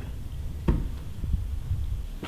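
Quiet room tone: a low steady rumble with a single soft knock a little way in.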